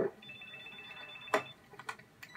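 Cell phone ringing: a high electronic ring of two steady tones held for about a second, followed by a sharp click.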